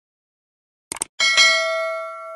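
Subscribe-animation sound effect: a quick double mouse click, then a bright bell chime that rings and slowly fades.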